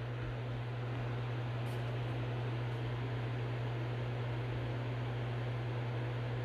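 Steady low hum under an even hiss, with no other event: background room noise.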